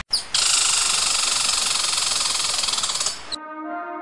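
Intro soundtrack: a steady, high hiss-like noise effect with a fine flutter runs for about three seconds and cuts off suddenly. Soft, sustained ambient music then begins.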